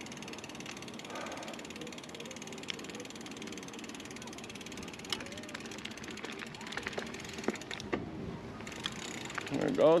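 Mountain bike's rear freehub ticking fast and steady as the rider coasts down the trail, with scattered sharp knocks from the bike over rough ground. The ticking breaks off briefly about eight seconds in.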